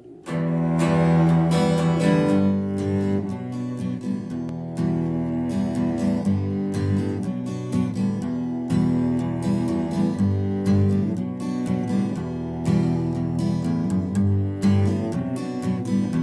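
Strummed acoustic guitar and a bowed cello holding long low notes, playing the instrumental intro of a song. It comes in sharply right at the start after a count-in.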